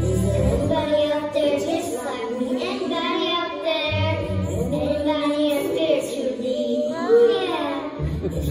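A young girl singing into a microphone over backing music, the bass of the backing dropping out for stretches; a loud, wavering note near the end.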